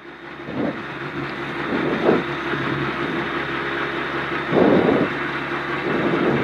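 Citroën C2 R2 Max rally car's engine idling while the car stands still, heard from inside the cabin. It rises and falls a few times in short surges, the biggest about four and a half seconds in.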